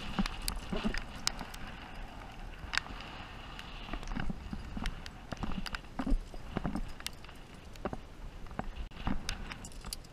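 Irregular clicks, scuffs and knocks of a climber's hands and shoes on rock while climbing, over wind rumbling on the microphone.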